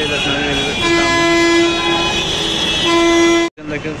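A vehicle horn blowing in road traffic: one steady blast of about a second, then a second blast near the end that cuts off abruptly.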